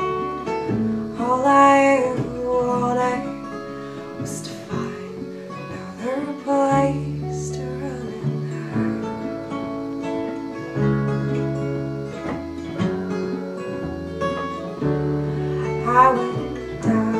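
A small band playing a slow song: strummed acoustic guitar over held bass guitar notes and keyboard chords.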